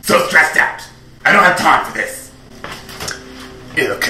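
A person's voice in short bursts with pauses between them, with no clear words.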